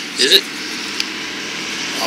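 A brief spoken "Is it?", then the steady, even noise of a distant vehicle, growing slightly louder toward the end.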